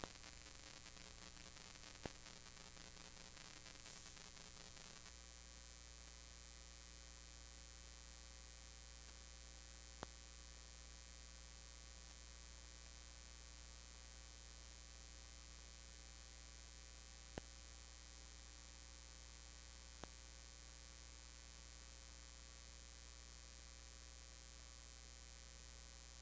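Near silence: a low, steady electrical mains hum on the audio feed, with four brief faint clicks scattered through.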